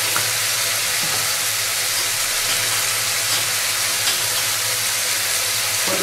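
Sliced onions frying in hot oil in a wok, a steady sizzle with a few faint crackles.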